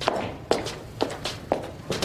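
High-heeled shoes climbing stone stairs: sharp footstep clicks at a steady pace of about two a second.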